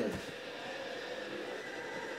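Steady background hum with a few faint constant tones, no distinct event: room tone.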